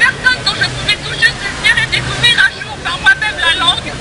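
Crowd chatter: many people talking over one another at once, over a steady low background hum.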